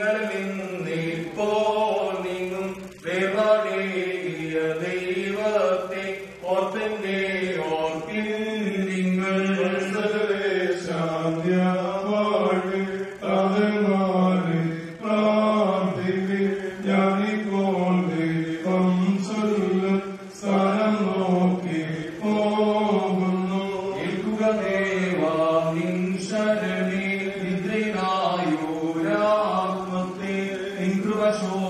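Male priests chanting a hymn of the funeral service in a slow, wavering melody with long held notes, sung into a microphone.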